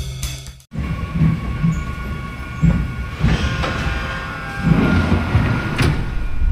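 Music stops under a second in, then a train is heard running on rails: a low rumble with uneven clatter and a steady high whine.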